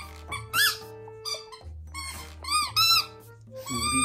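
A dog's rubber squeaky toy being bitten by a Chihuahua puppy, giving several short, high squeals that rise and fall in pitch. The squeals are loud and ring through the room, over background music.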